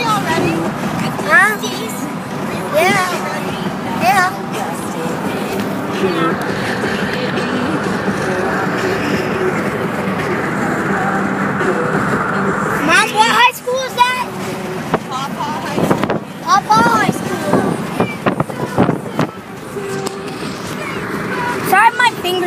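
Music from a car stereo over steady road noise inside a moving car's cabin, with short bits of voice breaking in now and then, busiest a little past halfway.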